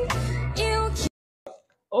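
Young female singer's live vocal, a held pop-ballad line over low sustained accompaniment, cut off abruptly about a second in as playback is stopped. A short silence follows.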